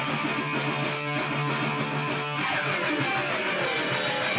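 Live rock band's song opening: amplified electric guitar playing a riff over sustained low notes, with a cymbal ticking a steady beat about three times a second.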